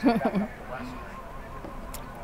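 A woman's short laugh in a few quick pulses at the start, then only the low background of a parked car's cabin, with a faint click near the end.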